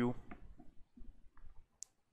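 Quiet pause with faint scattered low noises, and one short, sharp click near the end.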